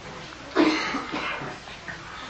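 A single cough about half a second in, fading out over about half a second.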